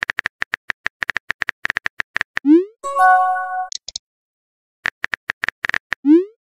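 Chat-app sound effects: a quick run of keyboard-typing clicks, then a rising bloop and a short bright chime of several held notes about halfway. After a brief silence the typing clicks start again, and another rising bloop comes at the very end as a new message pops up.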